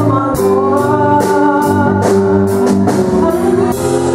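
Live band music: an electric bass under held, organ-like chords, with a steady beat of cymbal-like hits about twice a second.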